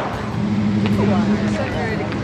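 Road traffic: a car passing on the road, a steady hum over road noise, with faint indistinct voices.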